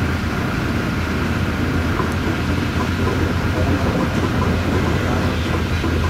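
Heavy diesel construction machinery running: a steady, unbroken low rumble.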